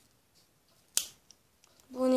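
One sharp snip of scissors cutting through a soft flexible fridge magnet about a second in, with a small tick just after.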